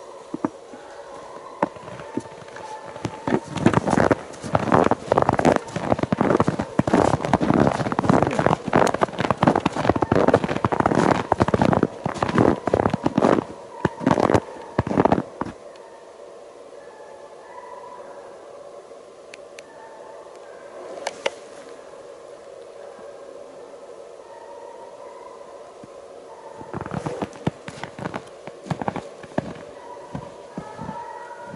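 Russian hounds giving tongue faintly in the distance while running a hare. About three seconds in, loud close crackling and crunching covers them for some twelve seconds, and it returns briefly near the end.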